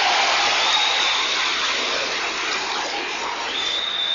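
Large audience applauding and cheering, with a high steady tone rising above it about a second in and again near the end.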